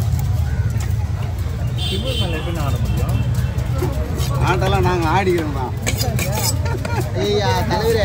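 People talking over a steady low rumble of market noise. About six seconds in come a few sharp knocks, the cleaver striking the wooden chopping block.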